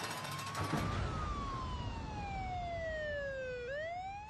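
Siren wail sound effect: a pitched tone that rises for about a second, falls slowly for nearly three seconds and starts rising again near the end, over a steady hiss.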